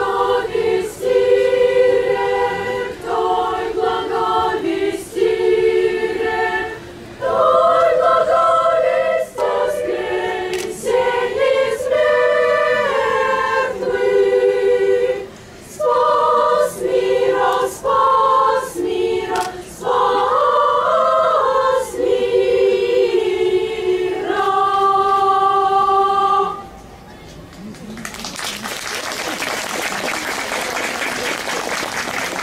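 Children's choir singing a song in phrases of a few seconds each. The song ends about 27 seconds in, and a second later applause starts.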